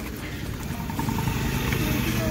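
Motor vehicle engine running on the street, growing louder about a second in.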